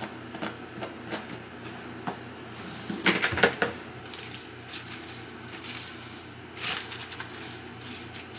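Hands scrubbing and squeezing a shampoo-lathered closure wig in a plastic salon shampoo bowl: wet rubbing and squishing with scattered clicks, louder scrubbing about three seconds in and again about seven seconds in.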